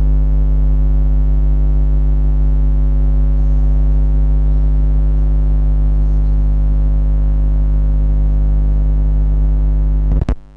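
Loud, steady low electrical hum with a buzzy edge from the sound system or recording feed, typical of mains hum from a faulty connection.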